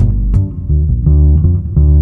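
Upright double bass plucked pizzicato, a steady line of low notes, about three a second.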